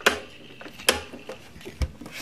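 Three sharp plastic clicks about a second apart: the handle of a Pie Face game being cranked round.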